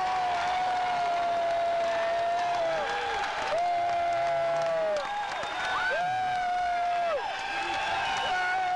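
Live blues-rock performance: a string of long held notes near one pitch, each sliding down at its end, over a crowd applauding and cheering.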